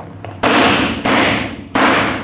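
Three gunshots, radio-drama sound effects, spaced a little over half a second apart, each a sudden crack trailing off in a long echo.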